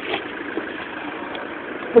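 Steady background noise with no distinct event, well below the speech on either side.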